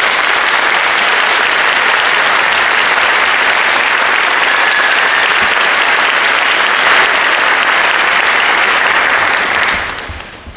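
Audience applauding steadily and loudly, then dying away near the end.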